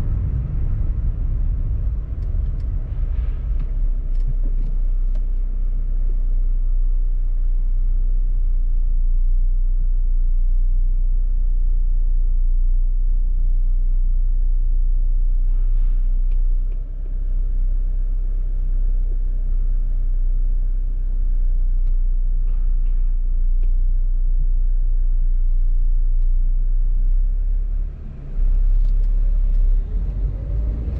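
Steady low rumble of a car's engine and road noise heard from inside the cabin while driving, with a few faint ticks and a brief dip near the end.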